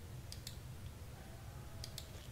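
Faint computer mouse clicks: two about half a second in and two more near the end, over a low steady hum.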